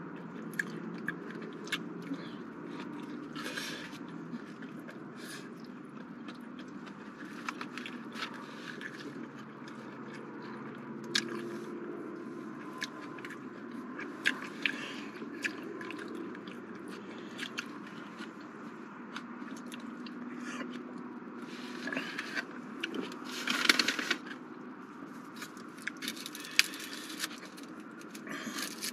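A person chewing a McDonald's McRib pork sandwich, with many small wet mouth clicks and smacks. A louder rustle of paper comes a little before the end.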